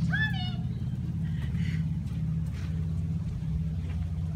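Steady low engine hum, like a vehicle idling, holding an even pitch throughout.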